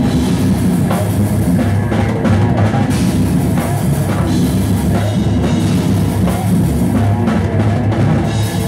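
Live metal band playing loud: electric guitar over a drum kit pounding continuously, with no break.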